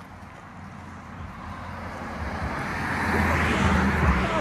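A vehicle on the road alongside, approaching and growing steadily louder, with its tyre noise and a low engine hum peaking near the end.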